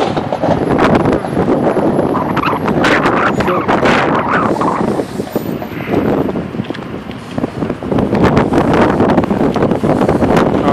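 Wind buffeting a phone's microphone, a loud, rough rumble that eases off for a couple of seconds midway before picking up again.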